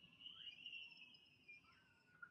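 Faint squeak of a dry-erase marker drawn across a whiteboard: a thin high tone held for over a second that drops to a lower pitch near the end.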